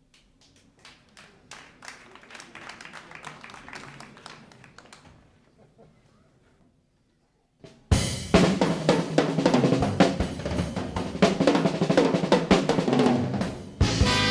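Live jazz-rock big band with a drum kit. A quiet patter of soft strikes swells and fades over the first few seconds, then stops briefly. About eight seconds in the full band crashes in loudly, drums to the fore, and horns enter near the end.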